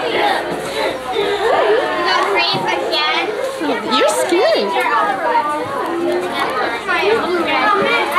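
Many children talking and calling out at once: a steady, overlapping chatter of young voices with no single speaker standing out.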